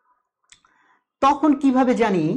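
A short pause with a faint click about half a second in, then a man starts speaking again a little over a second in.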